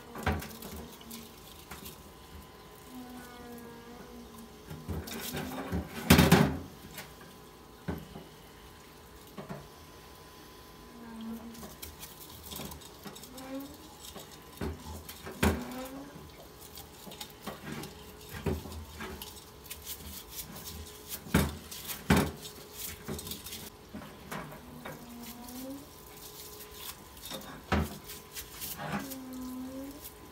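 Brake drum and wheel hub being turned and scrubbed in a metal parts-washer tub: irregular clanks and knocks of metal parts against the tub, the loudest about six seconds in, with solvent trickling from the flow-through brush nozzle.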